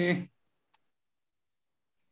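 The last of a spoken word in the first quarter second, then dead digital silence on the call audio, broken once, a little under a second in, by a single faint short click.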